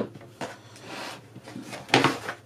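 A sharp click as the detachable back panel of a portable monitor comes free, then soft sliding and handling of the panel, with another short knock near the end.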